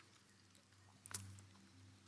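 Near silence: room tone with a faint steady low hum and a brief small click about a second in.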